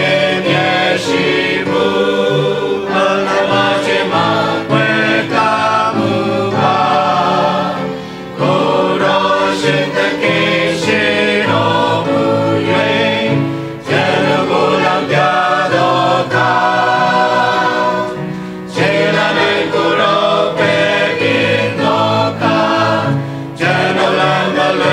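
Mixed church choir of men and women singing together, in long phrases with a few brief breaks between them.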